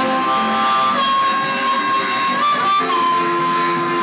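Blues harmonica playing long held, bent notes over a resonator guitar accompaniment, with one note bent up and dropping to a new held note about three seconds in.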